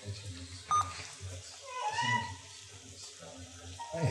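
A cat meowing once, a single rising-and-falling call about two seconds in. A short beep comes just under a second in.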